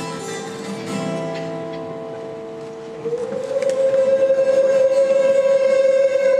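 Solo acoustic guitar picked in single notes; about three seconds in, a loud, long held vocal note with a slight waver enters over the guitar and carries on.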